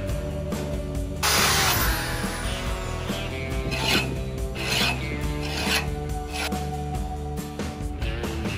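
A hand file rasping across the edge of a steel rotary-cutter blade clamped in a vise: a long, loud stroke about a second in, then several shorter strokes. Guitar background music plays underneath.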